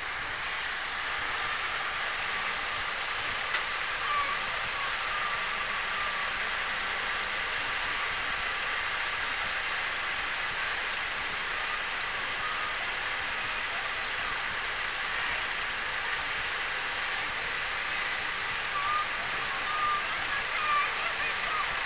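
Steady, even outdoor background noise, a hiss-like wash with no distinct sounds standing out.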